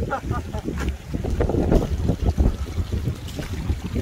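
Wind buffeting the microphone, a gusty, uneven low rumble, with scattered faint knocks over it.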